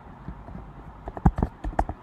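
Computer keyboard typing: a quick run of about six keystrokes a little over a second in, the first the loudest.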